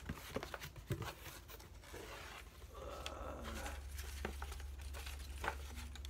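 Cardboard box flaps being opened and a hand rummaging through loose paper slips, rustling and crinkling with small knocks against the cardboard.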